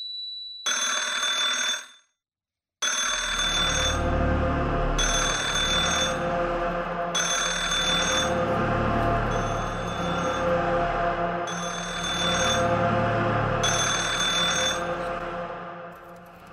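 Bell-like ringing in bursts of about a second: one ring, a second of silence, then rings repeating roughly every two seconds over a low music bed. The sound fades out near the end.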